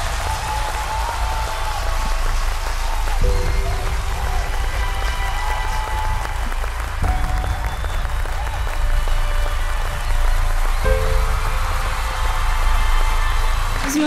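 Studio audience applauding over a sustained musical underscore of held chords that change every few seconds, with a steady low bass.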